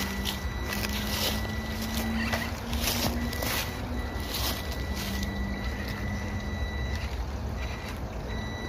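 The small brushed electric motor and gearbox of the SG1802 1/18-scale RC crawler running at low speed with a steady whine that wavers a little in pitch. Leaves crackle and rustle under its tyres.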